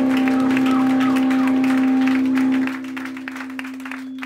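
A steady low note ringing out through an amplifier at the end of a live hardcore song, with scattered clapping and cheering from a small crowd. The whole sound drops in level about two and a half seconds in while the held note keeps sounding more quietly.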